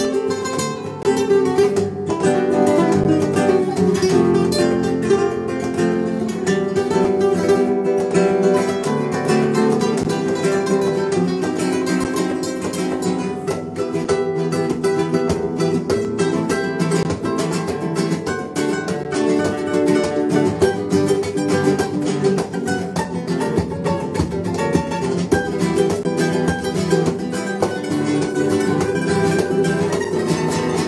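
Two nylon-string classical guitars playing a duet together, a quick stream of plucked notes over chords.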